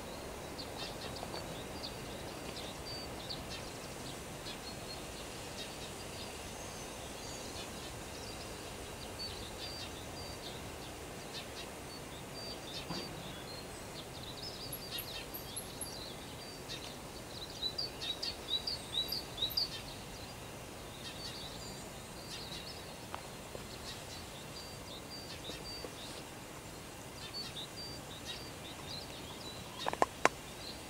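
Pond-side ambience: birds chirping in short, repeated high calls over a steady outdoor hush, the chirps coming thicker and louder a little past halfway.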